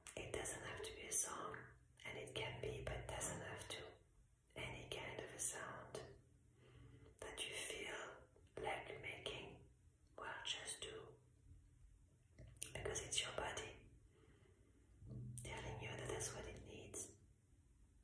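A woman whispering softly in short phrases of a second or two, with brief pauses between them.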